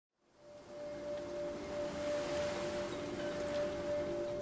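Logo intro sting: a held, bell-like ringing tone fades in about half a second in and rings on steadily, with a fainter lower tone beneath it and a soft airy swell.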